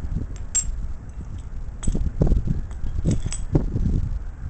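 Broken steel connecting-rod pieces being handled on a concrete floor: a few sharp metallic clinks and duller knocks over a low steady rumble.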